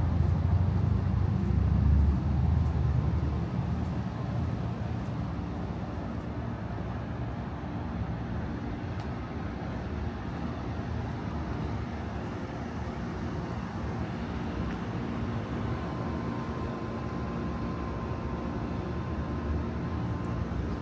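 Outdoor street ambience: a steady low rumble of traffic, loudest in the first three seconds and then even.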